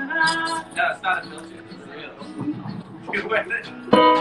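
Guitars being played, strummed and picked, with voices talking over them and a sharp strum near the end.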